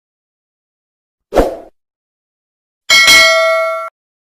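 Logo-outro sound effects. After silence comes a short hit about a second and a half in, then near the end a bright bell-like ding with several ringing tones that lasts about a second and cuts off suddenly.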